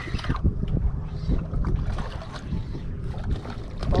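Wind buffeting the microphone in an uneven low rumble, with the slosh of water around a small open boat and a few light knocks.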